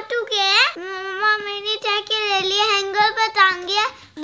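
A young boy singing in a high voice, holding a near-level pitch through a run of syllables.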